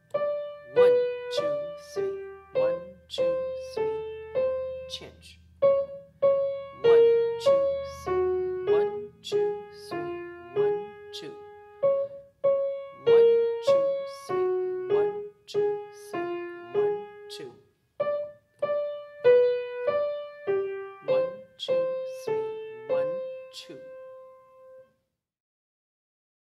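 Shigeru Kawai piano played slowly with the right hand alone: a single line of separate notes in the middle register, about two a second, grouped in 5/4 as 2+3 and 3+2. The playing stops about a second before the end.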